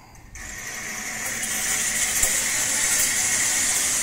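Sliding shade-cloth canopy being drawn along its overhead wire cables by a pull cord, its runners sliding on the wires. A steady mechanical sliding noise starts about a third of a second in and grows louder over the first second, then holds.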